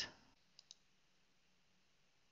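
Near silence, with two faint computer mouse clicks close together about half a second in.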